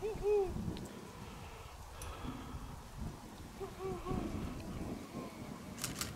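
Low wind rumble on the microphone, with faint distant voices briefly at the start and again about four seconds in, and a sharp click near the end.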